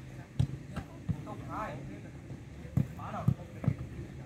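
A football being struck and bouncing on artificial turf: about six dull thuds, in two clusters, with short calls from voices in between.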